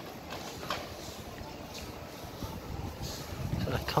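Street background noise with a steady hum of traffic and a few light clicks, with a man's voice starting right at the end.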